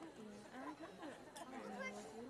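Chatter from several people talking at once, with no other clear sound above the voices.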